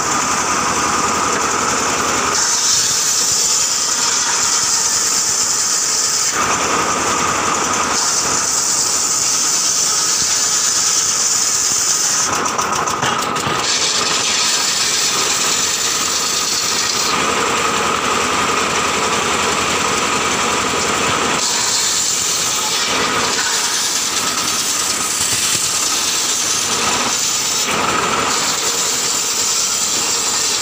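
Large bench-mounted circular saw running continuously while boards are ripped lengthwise on it, a steady running tone with a hissing cutting sound that swells and fades every few seconds as each board passes through the blade.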